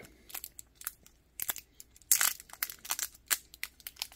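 Foil wrapper of a stick of chewing gum crinkling and tearing as it is peeled open by hand: a string of short crackles, with a louder rustle about two seconds in.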